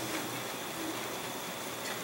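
Steady hiss of room tone with no distinct sounds.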